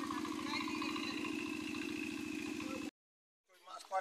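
A small engine running steadily with an even, rapid pulse, which cuts off abruptly about three seconds in; voices follow just before the end.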